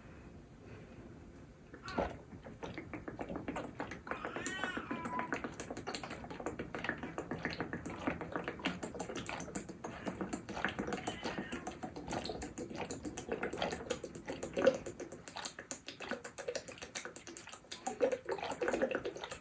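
Rapid, continuous gulping and swallowing as juice is chugged straight from a 1.5-litre plastic bottle. The gulps come several a second from about two seconds in, after a quieter start, with a brief squeaky sound about four seconds in.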